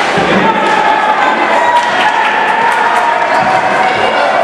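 Ice hockey play in an indoor rink: scattered clacks and thuds of sticks and puck on the ice and boards, under a steady background of voices.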